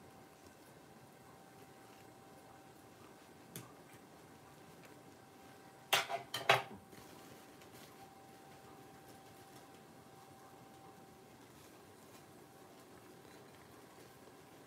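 A quick run of three or four hard clinks and knocks about six seconds in, objects such as a glass jar being handled and set on the countertop, with one lighter click a few seconds earlier. A faint steady hum underneath fades out near the end.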